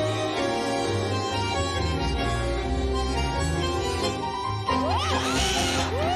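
Tango music with a reedy bandoneón-like melody over a pulsing bass. Near the end the audience breaks into applause and cheering, with rising-and-falling whoops over the music.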